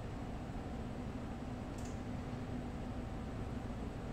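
Steady low background hiss with a faint hum, and a single faint mouse click about two seconds in.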